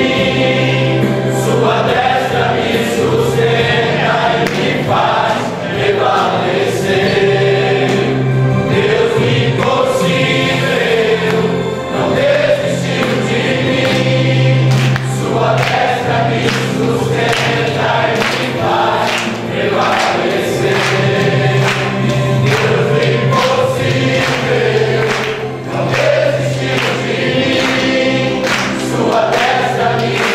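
A church congregation and a group of men singing a gospel worship song together, with instrumental accompaniment holding a steady low note beneath the voices.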